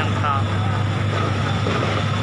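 A steady low vehicle engine hum over a constant haze of street noise, with a few words of speech at the very start.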